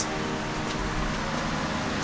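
Steady mechanical hum and hiss of room background noise, with a few faint clicks.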